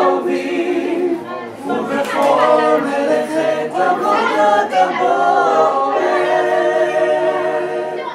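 Male a cappella vocal group of five singing a Jewish song in close harmony, with no instruments. The singing ends on a long held chord over the last couple of seconds.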